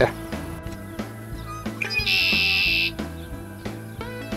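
Laid-back guitar background music. About two seconds in, a red-winged blackbird sings once over it, a brief sliding note into a loud buzzy trill lasting about a second.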